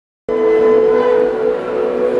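Live rock band music recorded from the audience: a sustained chord of several held notes, cutting in abruptly about a quarter second in.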